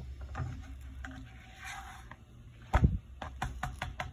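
A low hum fading away, then one heavy thump about three-quarters of the way through, followed by a quick run of light clicks and knocks.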